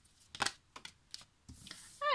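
Oracle cards being handled: a few light clicks and taps, the sharpest about half a second in, then a brief soft swish near the end as a card is slid out and laid on the table.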